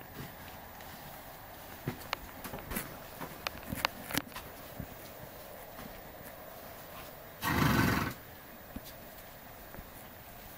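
Arabian stallion making one loud, short call about seven and a half seconds in, lasting under a second. A scatter of light knocks and clicks comes before it.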